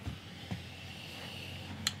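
A soft, drawn-out breath in as a glass of cider brandy is nosed, followed by a sharp mouth click just before speaking.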